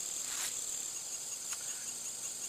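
Steady, high-pitched trilling of an insect chorus, with two faint clicks about half a second and a second and a half in.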